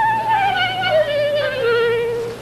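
Solo clarinet playing a falling phrase of about four held notes, each with a wavering vibrato, from a high note at the start down to a lower note held through the end.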